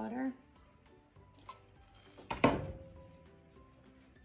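A glass measuring jug set down on a table with one sharp knock and a short ring about two and a half seconds in, among a few faint handling sounds.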